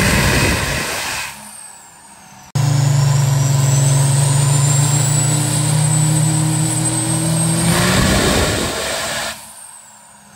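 Turbocharged Cummins diesel pickup making a full-throttle nitrous pull on a chassis dyno: a steady engine drone with a high turbo whine that climbs slowly, swelling to a louder rough surge near the end. The throttle then closes and the turbo whistle winds down. The pull's end is heard twice, spliced together with an abrupt cut about two and a half seconds in.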